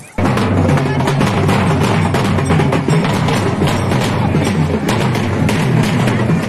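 Loud drum-led music with fast, dense strokes over a heavy low beat, cutting in suddenly just after the start.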